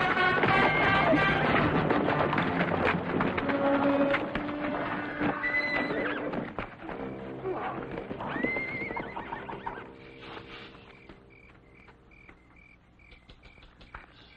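Orchestral film score fading out, with a horse whinnying around the middle. Crickets chirp in a steady pulse over the quiet last few seconds.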